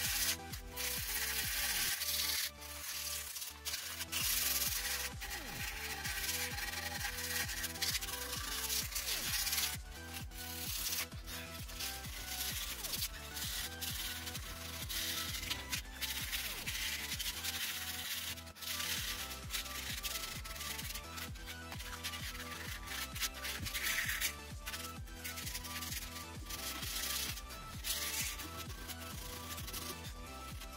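Sandpaper rubbed by hand back and forth along a wooden crossbow stock, in repeated irregular strokes. Electronic background music plays throughout.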